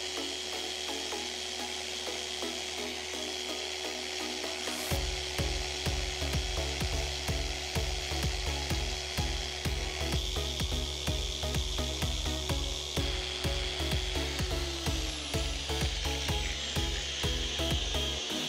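Electric car polisher with a foam pad buffing car paint: a steady motor whine over the hiss of the pad on the panel. The whine drops in pitch near the end as the motor slows. Background music with a steady beat comes in about five seconds in.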